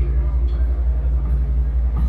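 Live band music in a gap between sung lines: a low bass note and guitar carry on without the voice, which comes back just after.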